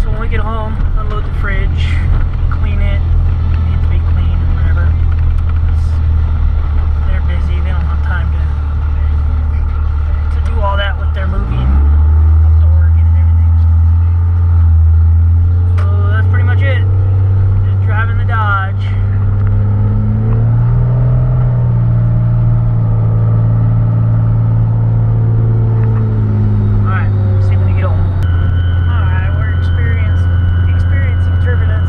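Dodge pickup's Cummins diesel engine heard from inside the cab while driving, a steady low drone. About a third of the way in it drops in pitch and gets louder, and it climbs again around two-thirds through. A steady high whistle comes in near the end.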